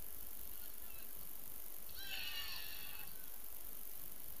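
Several young players' high-pitched shouts at once, about two seconds in and lasting about a second, over a steady background hiss.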